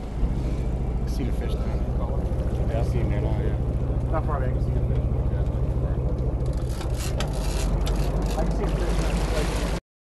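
Sportfishing boat's engine running steadily, a constant low drone, with faint voices over it. The sound cuts off suddenly near the end.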